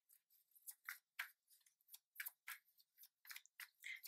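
Near silence broken by about a dozen faint, irregular small clicks and ticks.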